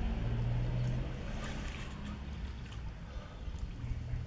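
Pool water sloshing and splashing as a man swims through it, with a low steady hum lasting about a second near the start and coming back near the end.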